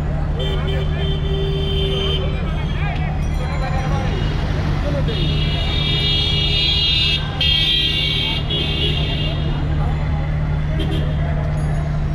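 Busy city street traffic: a steady low engine rumble, with vehicle horns honking, including longer blasts from about five to nine seconds in, and people's voices in the background.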